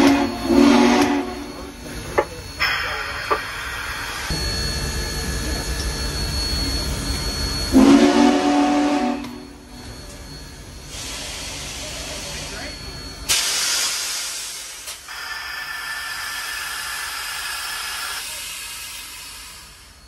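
Union Pacific Big Boy No. 4014 steam locomotive heard from inside its cab: the steam whistle blows twice, at the start and about eight seconds in, each blast about a second and a half long, over a steady hiss of steam. About thirteen seconds in, a louder rush of steam starts and dies down over a couple of seconds.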